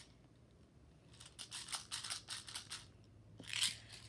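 A rapid run of about a dozen small, sharp plastic clicks from a toy speed loader being worked by hand. Near the end comes a short, loud rushing burst of noise.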